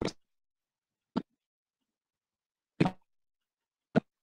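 Video-call audio breaking up: four short, chopped fragments of sound, each only a fraction of a second long, with dead silence between them. It is the sign of an audio fault on the stream, where the sound has "gone all wrong" after a video with its own soundtrack was set playing.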